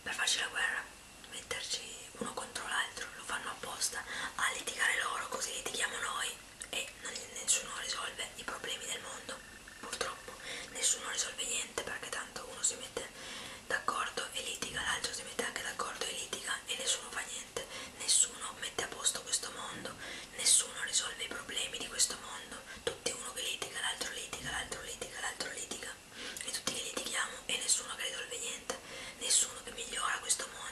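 A woman whispering in Italian, with many crisp, hissing 's' sounds.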